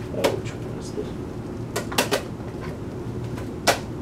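Hard plastic clicks and clacks from handling a Nerf blaster and its long plastic magazine: about five separate sharp clicks, one just after the start, a close pair around two seconds in and one near the end, over a low steady hum.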